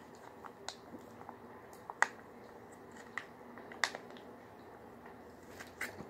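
Quiet drinking from a foil juice pouch through a straw: a few short clicks and swallowing sounds, the sharpest about two seconds in.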